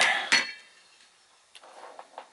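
Metal clinks as an inverter circuit board with a finned metal heat sink is tipped over and set down on a plastic battery-rack top: two sharp clinks about a third of a second apart, the first with a brief ring, then a few faint taps near the end.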